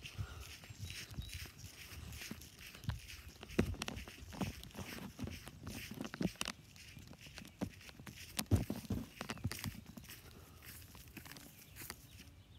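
Footsteps through grass and brush while walking, with rustling and irregular clicks and knocks from the handheld phone.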